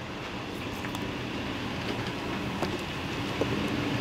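Steady street background noise: a low, even hum of road traffic, with a few faint taps.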